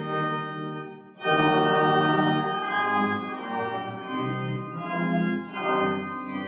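Church organ playing sustained chords, with a brief break about a second in before a louder chord comes in.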